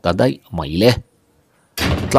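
A man's voice narrating, with a pause of under a second in the middle.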